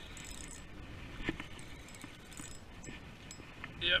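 Spinning reel being cranked as a fish is reeled in and landed, a few light clicks and rattles from the reel and line over steady wind noise on the microphone.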